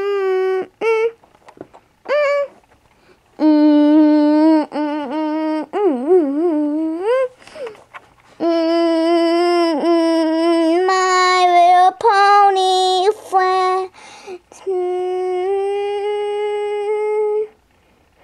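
A child humming a wordless tune in a high voice: long held notes broken by short pauses, with a wavering, warbling stretch about six seconds in.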